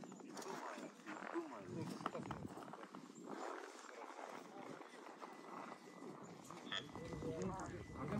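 Indistinct talking of several people, low in level and without clear words.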